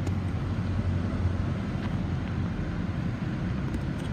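Steady hum and rushing fan noise of a 2011 Ford Focus SE at idle: its 2.0-litre four-cylinder running with the air conditioning blowing.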